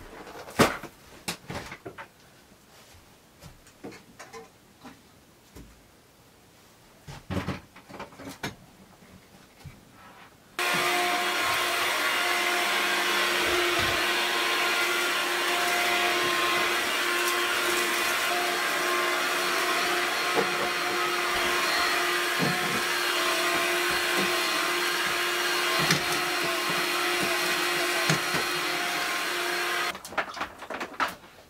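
Upright carpet cleaner (carpet steam cleaner) switched on about a third of the way in, then running steadily: motor rush with a steady whine over it. Before it starts, a few scattered knocks and clatter of things being moved.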